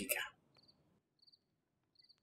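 Crickets chirping faintly, a short high chirp repeating about every 0.7 seconds.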